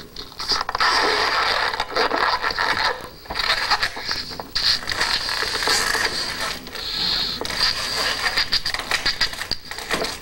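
A long twisting balloon being blown up by mouth, its latex squeaking and rubbing as it pushes out through fingers wound in a figure-eight. There are a few short breaks, where the blowing pauses for breath.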